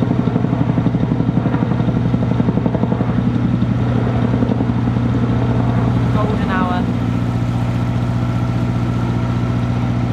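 Chinook-type tandem-rotor helicopter flying overhead, its rotor beat a fast, even pulsing for the first six seconds or so, over the steady running of the narrowboat's 1.5 BMC diesel engine. After the beat fades the diesel runs on alone.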